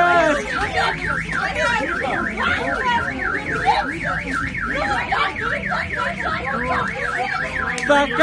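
A car alarm sounding, a fast warbling tone that sweeps up and down several times a second, with people shouting beneath it.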